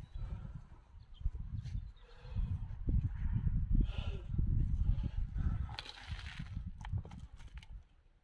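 Wind buffeting the microphone in irregular gusts, with light rustling and scraping now and then.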